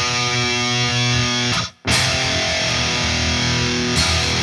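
E5 power chord (open low E string with the second fret of the A string) played with distortion on an ESP LTD M-1000HT electric guitar. It rings, is cut off short about a second and a half in, then is struck again and left to sustain.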